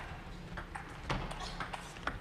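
Table tennis ball clicking sharply off bats and table during a doubles rally, a few separate hits spread through the moment.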